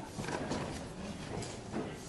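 A pause in a man's speech into a microphone: faint room noise with a few soft, indistinct ticks.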